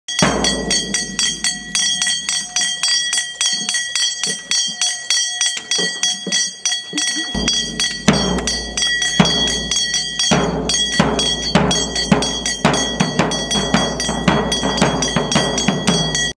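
A metal bell struck rapidly and continuously, about five strikes a second, its ringing held throughout. From about seven seconds in, a large bass drum beaten with a mallet joins in with heavy booming beats over the bell.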